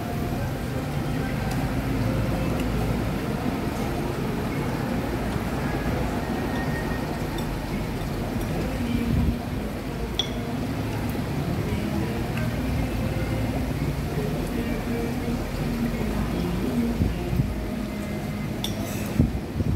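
Restaurant dining-room ambience: a steady low rumble with an indistinct murmur of voices, and a few light clinks of utensils on china, the clearest about ten seconds in.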